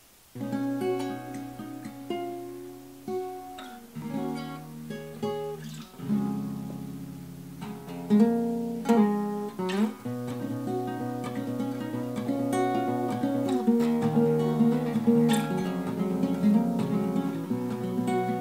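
Solo acoustic guitar playing a fingerpicked song introduction: single plucked notes and ringing chords that start just after the opening and settle into a steadier, fuller picking pattern about ten seconds in.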